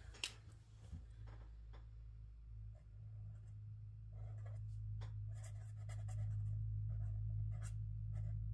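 The brush tip of a Tombow dual brush pen writing on notebook paper: soft, repeated strokes from about three seconds in, after a few light clicks at the start, over a steady low hum.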